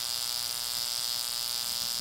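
High-voltage AC arcs buzzing steadily across two small gaps between brass electrodes and a steel ball. The arcs burn continuously and do not break, because the brass electrodes are not magnetic and nothing swings.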